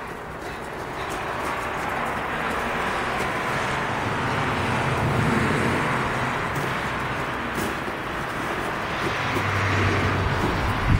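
A road vehicle passing: a steady rush of tyre and engine noise with a low hum that swells to a peak about five seconds in, eases off, then builds again near the end.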